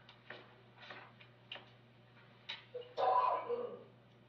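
Room noise from a courtroom feed: scattered light clicks and knocks over a steady low electrical hum, with a louder, longer sound about three seconds in.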